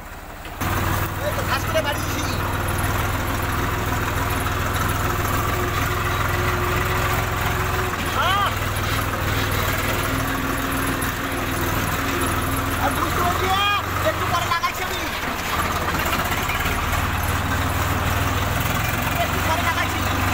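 Swaraj tractor's diesel engine running steadily with a constant low hum while it pulls a trailer loaded with straw.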